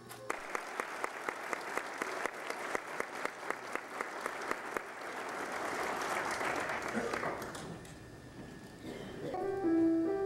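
A hiss with quick, even clicks, about four a second, fills most of the first seven seconds and then fades out. Near the end a piano begins playing sustained notes.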